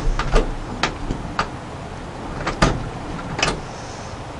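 A door being worked at the handle and latch: a handful of irregular sharp clicks and knocks, the loudest about two and a half seconds in.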